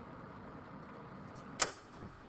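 Steady low room noise, a hum with hiss behind it. Near the end a short, sharp sound cuts in as a man's voice resumes speaking.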